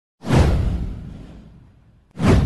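A whoosh sound effect for a video intro: one sudden swoosh that falls in pitch over a deep low boom, starting a moment in and fading away over about a second and a half.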